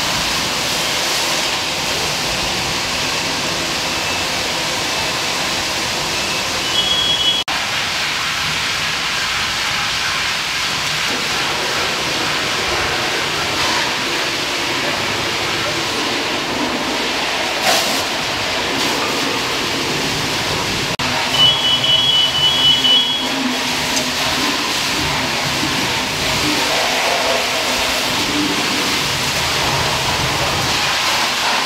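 Steady rushing hiss of fire-hose water striking a burning truck and flashing into steam, with a short high two-tone electronic beep heard twice, about a quarter of the way in and again past two-thirds.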